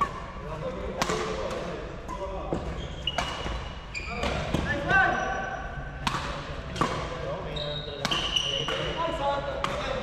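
Badminton rally in an echoing sports hall: sharp racket-on-shuttlecock hits about once a second, with short high sneaker squeaks on the court floor in between.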